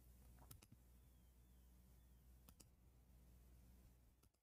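Near silence with faint computer mouse clicks: a pair about half a second in and another pair about two and a half seconds in, as a right-click menu is opened and "Copy" is chosen.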